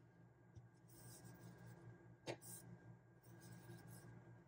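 Faint scratchy rustle of yarn drawn through and over a crochet hook as stitches are worked, with one soft tap a little after two seconds, over a low steady hum; otherwise near silence.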